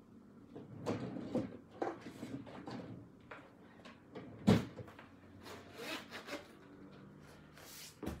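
Handling noises as things are moved about at a TV cabinet: scattered knocks and rubbing, with one sharp knock about four and a half seconds in.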